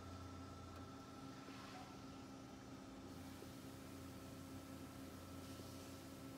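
Near silence: a faint, steady hum and hiss of a running reef aquarium's pumps and powerhead.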